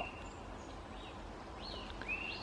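A few faint, thin, high-pitched calls, short and arched, over a quiet outdoor background: the 'wee wee' noise of Cooper's hawk fledglings, which have not yet learned the adult call.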